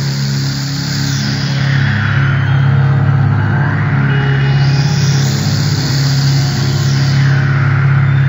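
Electronic synthesizer passage played live by a band: a steady low bass note held under swells of filtered noise that sweep down and back up about every four seconds.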